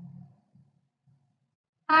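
Near silence in a pause between a woman's spoken phrases: her voice fades out at the start and starts again just before the end.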